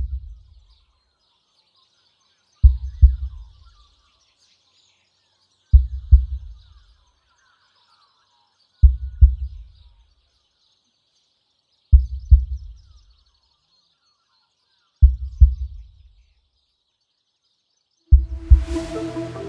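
Heartbeat sound effect: a deep double thump repeating about every three seconds, five times, over faint high chirping like distant birds.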